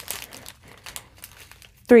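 Small plastic zip bags of diamond-painting drills crinkling quietly as they are handled and turned over, a scatter of light crackles.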